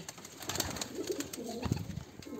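Pigeons cooing softly, with scattered scuffs and clicks and one low thump shortly before the end.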